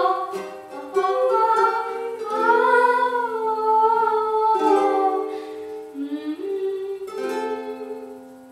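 Acoustic ukulele strummed and plucked under a woman's wordless singing, a held, wavering melody line. The sound fades away near the end.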